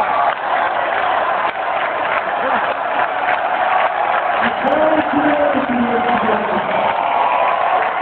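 A large crowd of several thousand people cheering and applauding loudly and without a break, with a voice rising above it about five seconds in.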